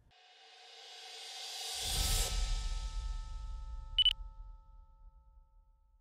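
Logo intro sound effect: a whoosh swelling up for about two seconds into a deep bass hit with lingering tones. A single bright ding comes about four seconds in, and the whole thing fades out.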